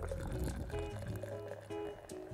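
Beer being poured from a glass bottle into a handheld glass, with instrumental background music running under it.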